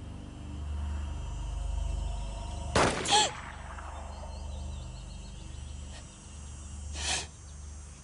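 Paintball gun firing: one shot about three seconds in, followed at once by a short pained cry, and a second shot near the end. A low rumbling drone runs underneath.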